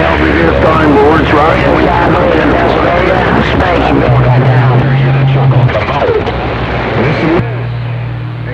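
CB radio receiving on channel 28 with several distant stations talking over one another, the voices garbled and hard to make out, over a steady low hum. The pile-up thins out about seven seconds in.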